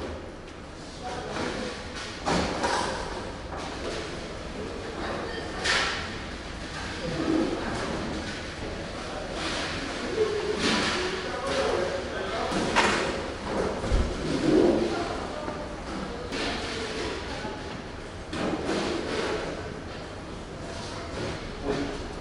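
Background chatter of several people, with scattered knocks and clanks as stainless steel brewing pots and equipment are handled, and one heavier thud about 14 seconds in.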